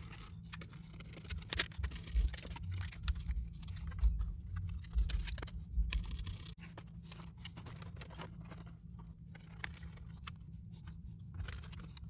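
Scattered faint clicks and small taps of a precision screwdriver working the screws and metal shielding inside an open iBook G3 laptop case, over a low steady hum.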